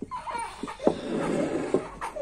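A baby whimpering and fussing in short, high-pitched sounds. A louder rustling noise of handling runs for just under a second in the middle.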